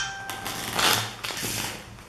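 A deck of plastic-coated playing cards being riffle-shuffled: a quick crackling rush of cards falling together, loudest about a second in.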